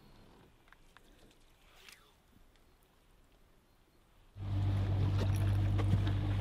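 Near silence with a few faint ticks for about four seconds, then the steady low hum of an outboard motor running starts suddenly near the end.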